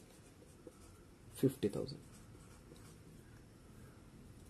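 Marker pen writing figures on a whiteboard, faint scratching strokes of the felt tip on the board.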